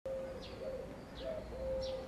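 Faint outdoor ambience with a small bird chirping three times, each a short falling chirp, over a low steady hum.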